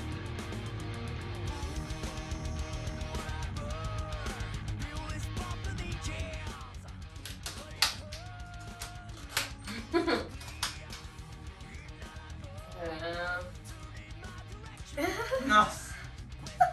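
Background music plays while a guitar hard case's metal latches snap open with several sharp clicks between about eight and eleven seconds in. Near the end a woman's voice gives an excited exclamation, the loudest sound.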